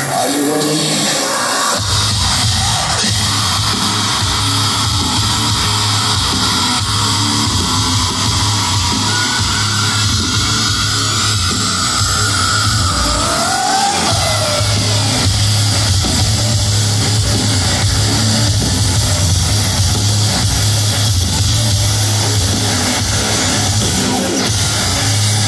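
A heavy electronic metalcore band playing live in an arena hall, with loud guitars, drums and synths, heard from within the crowd. A heavy low bass-and-drum section kicks in about two seconds in.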